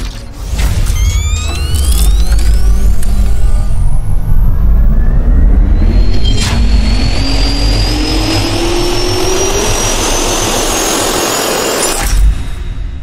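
Designed jet-engine spool-up sound effect: a whine that climbs steadily in pitch over several seconds above a low rumble and a building rush of air, with a sharp hit about halfway through.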